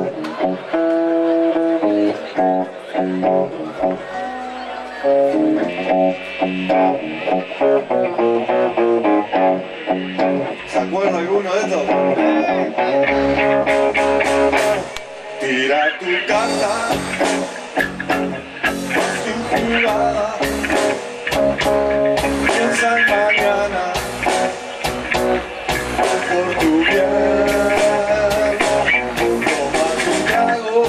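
Live rock band playing, led by electric guitar. A low bass line comes in a little before halfway, and drums with regular cymbal hits join about halfway.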